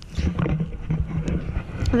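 Pig grunting close by: a low, rough run of grunts.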